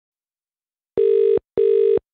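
British telephone ringback tone heard down the line: a single double ring, two short steady burrs a fraction of a second apart, starting about a second in, while the call is still unanswered.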